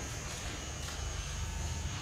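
A steady low hum with a thin, high-pitched steady whine above it: background room noise, with no distinct event.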